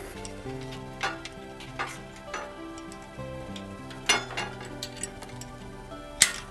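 Soft background music, with a few irregular sharp clicks from the ratchet winch of a traction unit as its belt is tightened.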